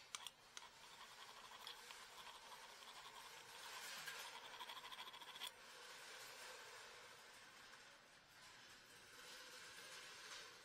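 Faint rasping of a metal hand file scraping brake hardware, with a run of quick strokes around the middle that stops abruptly.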